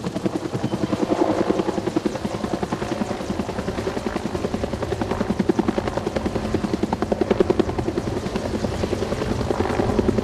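Helicopter hovering overhead with a utility pole slung below it on a long line, its rotor blades beating in a fast, steady rhythm.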